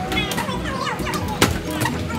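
Children's excited voices and squeals, with background music playing underneath. A single sharp knock comes about one and a half seconds in.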